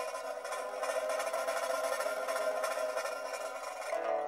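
Pipa music in a dense passage of rapid, noisy plucked attacks across the strings, with few clear held notes.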